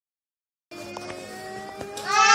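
Dead silence for under a second, then a steady hum from an electric tower fan running, with a few faint clicks.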